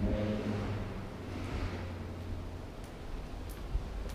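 A steady low hum with soft rustling swells near the start and again at about one and a half seconds.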